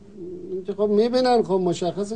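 A man speaking, with long drawn-out vowels. The speech is untranscribed, typical of a foreign-language answer.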